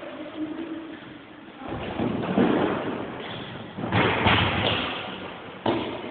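Three sudden heavy thumps about two seconds apart, each trailing off over roughly a second: bodies landing on judo mats during throwing techniques.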